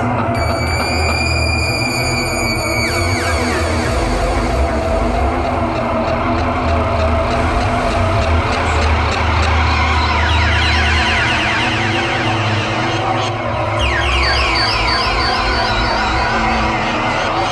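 Live experimental noise music from synthesizers: a loud, dense drone over a heavy low rumble. High steady tones in the first few seconds slide down into falling sweeps, and runs of quick downward glides come in again near the end.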